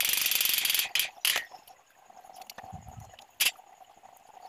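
Stick-welding arc crackling in a short, loud tack-weld burst of under a second on the steel tube frame, followed by a few sharp metallic clicks.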